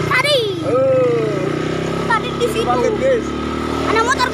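A small ATV engine running steadily as the quad rides along, with high, swooping voice-like calls over it, loudest in the first second or so.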